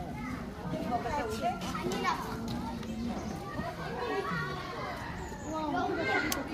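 Background voices: children and adults talking and calling out faintly, with no single clear sound standing out.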